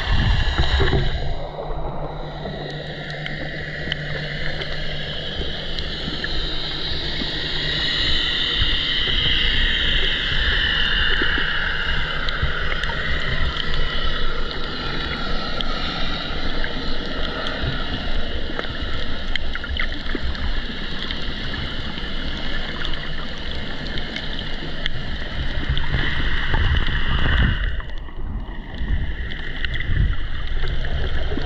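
Underwater sound picked up through a GoPro housing held in the sea: a steady wash of water noise and low rumble, with many faint scattered clicks.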